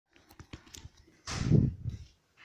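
Handling noise from a phone camera being carried: a few light clicks and knocks, then a louder rustling thump a little past one second in.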